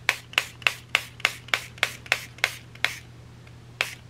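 Pump mister bottle of gold spray dye spritzing: about ten quick sprays in a row, roughly three a second, then a pause and one more spray near the end.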